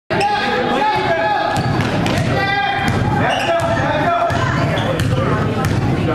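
A basketball bouncing on a gym floor at irregular intervals, with voices of players and spectators all around.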